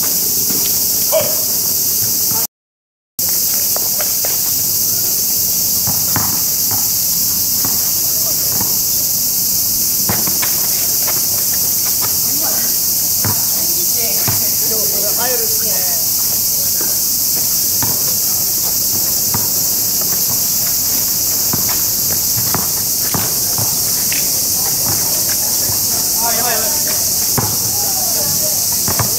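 Loud, steady, high-pitched insect chorus from the trees. Scattered faint knocks of a basketball bouncing on asphalt and distant players' voices run under it.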